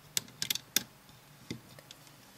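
Rubber loom bands and fingers clicking against the clear plastic pins of a Rainbow Loom as bands are stretched into place: a few small sharp clicks, several close together in the first second and a couple more near the end.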